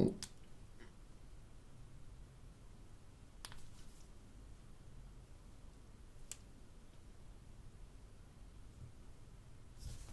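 Quiet room tone with a faint low hum, broken by two faint clicks from handling two iPhone 5S phones, one about three and a half seconds in and one a little after six seconds.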